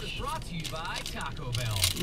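Quiet talking with a low steady hum in the background that grows stronger in the second half.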